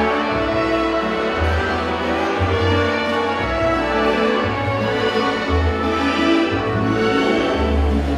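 Viennese waltz music played for the dancing, with a deep bass note that changes about once a second.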